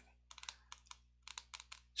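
Faint typing on a computer keyboard: a dozen or so light, irregular key clicks, some in quick runs.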